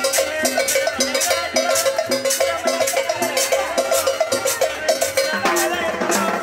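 Live dance music from a small street combo: a button accordion plays the melody over plucked upright bass notes and hand percussion keeping a steady quick beat.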